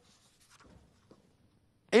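Faint rustle of paper as a sheet is handled on a desk, with a small tick about a second in.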